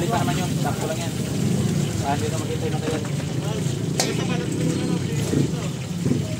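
A small engine idling steadily, most likely a motorcycle, under background chatter, with one sharp click about four seconds in.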